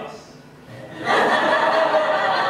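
A theatre audience breaks into laughter about a second in, many people laughing together loudly and without a break.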